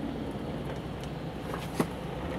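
Steady low road and engine rumble heard inside a Mercedes-Benz car's cabin while it drives in slow freeway traffic. A single sharp click comes near the end.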